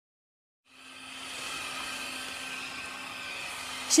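Steady electric motor hum with hiss, like a running vacuum cleaner, fading in a little under a second in after total silence.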